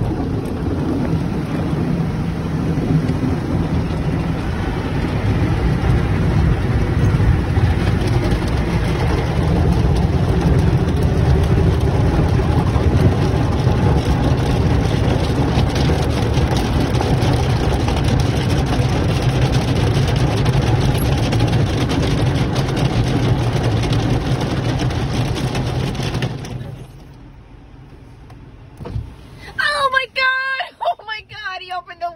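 Automatic tunnel car wash heard from inside the car: water spray and washing equipment working over the body and glass make a loud, steady rushing noise, which drops off sharply about four seconds before the end.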